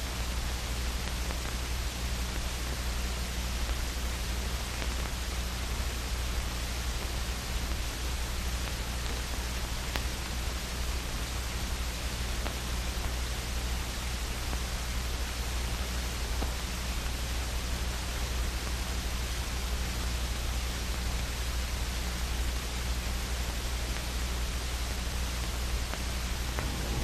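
Steady hiss and low hum of an old film soundtrack, with no other sound standing out.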